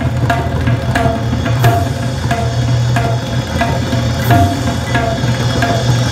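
Tabla being played solo: sharp, ringing strokes on the right-hand dayan in a steady rhythm, with an accented ringing stroke about every two thirds of a second, over the deep bass of the left-hand bayan.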